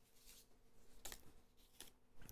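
Near silence: room tone with a few faint light rustles and taps, about a second in and again near the end, from instant coffee packets being handled.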